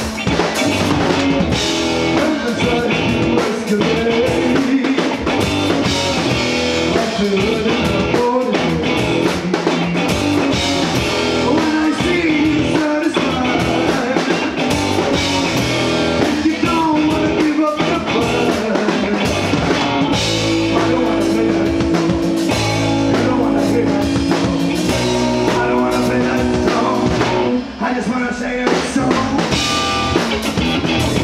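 Indie rock band playing live: electric guitar, bass guitar and drum kit, with sung vocals. Long held notes come in about two-thirds of the way through.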